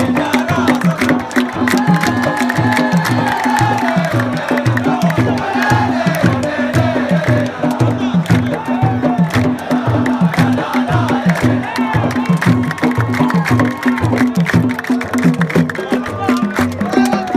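A crowd of fans singing together to a steady beat of large hand-held frame drums, with a lot of hand-clapping over the rhythm.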